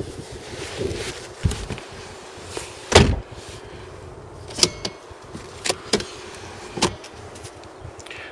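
Dodge Grand Caravan Stow 'n Go seat being folded into the floor by hand: a string of latch clicks and knocks, with one heavy thump about three seconds in and several sharper clicks after it.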